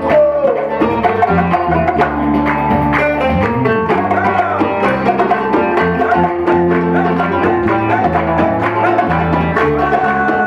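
Live band playing an instrumental passage of a Berber folk-fusion song: strummed acoustic guitar, electric bass, electric guitar, and hand drums keeping a steady beat, with a melody line that bends in pitch a few seconds in.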